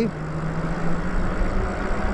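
Wind noise and road rumble from riding the Lyric Graffiti e-bike along a street, with a steady low hum that fades out after about a second.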